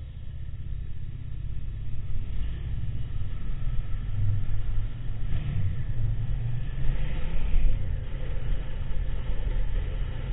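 A motorcycle riding at low speed, heard from a camera on the bike: a low, uneven engine and road rumble that grows louder over the first couple of seconds as the bike moves off, then holds steady.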